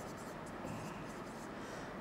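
Faint, steady rubbing of a stylus writing on the glass of an interactive touchscreen whiteboard.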